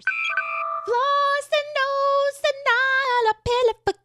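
A short electronic chime, then a high voice singing a word in a few held notes that step in pitch.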